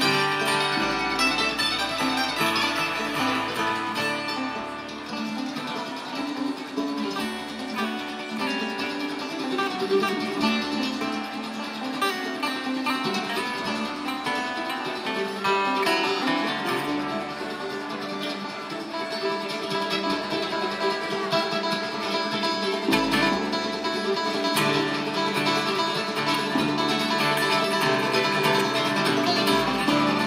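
Live bluegrass band playing an instrumental passage on acoustic guitar, mandolin, banjo and upright bass.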